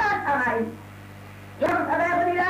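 A man's voice preaching in Bangla, breaking off less than a second in and starting again near the end, over a steady low hum in the recording.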